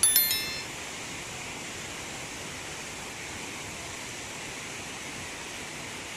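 A short, bright chiming sound effect of a few quick high notes stepping downward, from a subscribe-button animation, in the first half-second. After it comes a steady, even background hiss.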